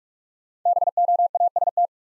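The word BOAST sent in Morse code at 45 words per minute: a fast run of beeps and longer beeps of one steady pitch, starting a little over half a second in and lasting just over a second.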